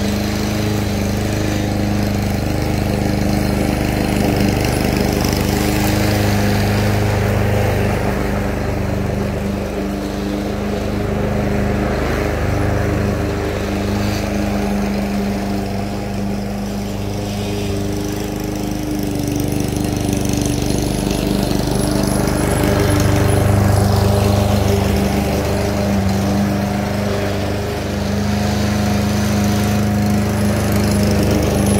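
Walk-behind gas lawn mower running steadily while cutting grass. Its engine note holds one pitch, with the loudness rising and falling gently as the mower moves nearer and farther across the lawn.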